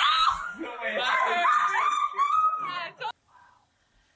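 People screaming and shrieking at a falling Jenga tower, high and loud for about three seconds, then cutting off suddenly.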